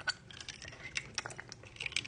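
Faint, irregular light clicks and crackles of a small plastic squeeze bottle being squeezed to dispense mineral oil into a plastic tube.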